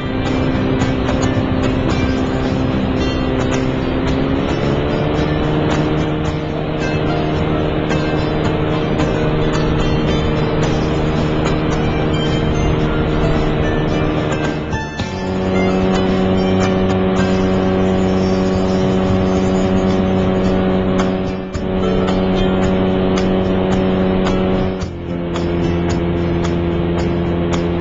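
A power parachute's engine and propeller running steadily, its pitch rising smoothly about four seconds in and shifting again about halfway through and near the end as the throttle changes.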